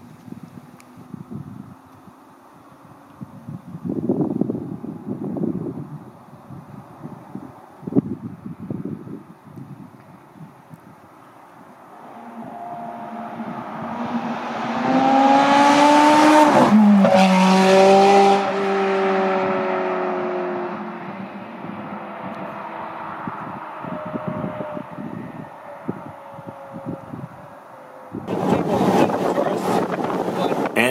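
Ferrari 430 Scuderia Spider 16M's 4.3-litre V8 approaching with rising revs and growing louder. It passes close by a little past halfway with a sudden drop in pitch, then fades as it drives away.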